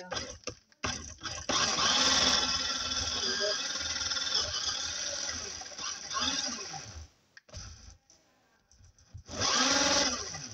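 Small electric motor and plastic gears of a LEGO car whirring as its wheels spin freely off the ground. It runs steadily for about six seconds, stops, and starts again near the end.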